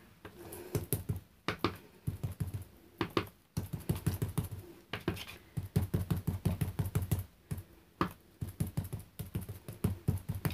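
Foam ink-blending tool dabbed repeatedly onto die-cut paper leaves on a mat, applying Distress Oxide ink: quick runs of soft taps, about five a second at the fastest, broken by short pauses.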